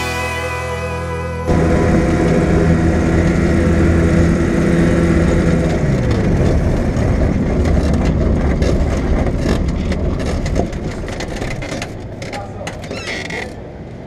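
A Quad City Challenger II ultralight's engine running while the aircraft taxis, heard from the cockpit after the music cuts off about a second and a half in. About six seconds in the pitch drops as the throttle comes back, and the engine keeps running at low power, quieter near the end.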